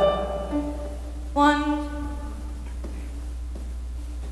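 A piano note on the D above middle C, given as the starting pitch for a vocal riff. It sounds softly about half a second in, then is struck again more strongly about a second and a half in and dies away over about a second.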